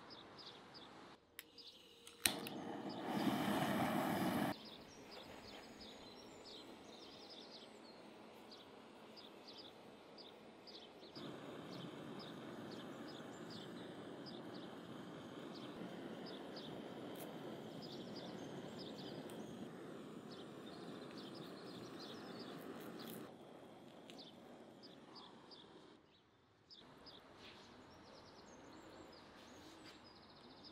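Outdoor ambience with small birds chirping repeatedly over a steady background noise. A few seconds in, a loud burst of noise lasts about two seconds.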